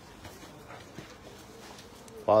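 Faint rustle and a couple of soft knocks as a cloth suit is handled and slid off a wooden counter, over low room noise.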